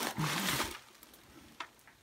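Bubble wrap and plastic packing crinkling as a chainsaw is lifted and turned in it, dying away after the first half-second or so, with one faint click later on.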